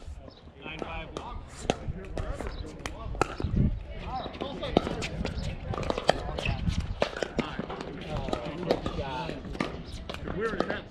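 Pickleball paddles hitting a plastic ball in a doubles rally: a string of sharp pops at uneven intervals. Voices are heard among them.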